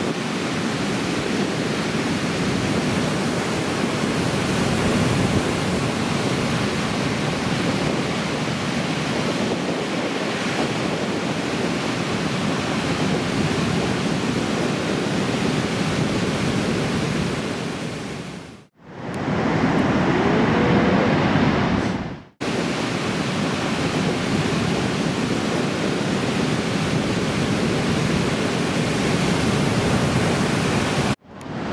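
Heavy ocean surf breaking, a continuous roar of whitewater, cut off sharply twice for an instant, once at about nineteen seconds in and again about three seconds later.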